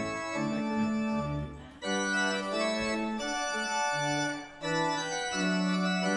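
Organ postlude closing a church service: sustained chords played in phrases, with brief breaks about two seconds in and again after four seconds.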